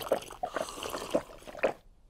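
A glass of water being drunk down in a quick series of wet gulps and slurps, stopping shortly before the end.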